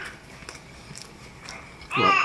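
A dog whining with a short, high-pitched, wavering cry near the end, over faint ticks from hands and food.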